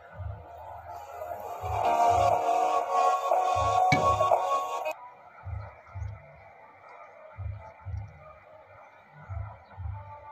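Music with a regular low beat playing from a homemade Bluetooth earphone built from an old Bluetooth speaker's parts. The brighter melody cuts off sharply about five seconds in, leaving a duller sound with the low beat going on.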